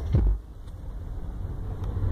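Car driving on a mountain road, heard from inside the cabin: a low engine and road rumble. It is louder and gustier for the first half-second, then drops to a quieter, steady rumble.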